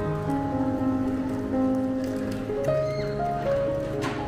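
Relaxing piano background music, slow held notes changing pitch every second or so.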